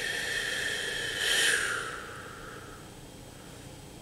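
A person's long, slow audible exhale, a breathy hiss that swells about a second in and fades away over roughly three seconds: the release of a held breath in a breathing exercise.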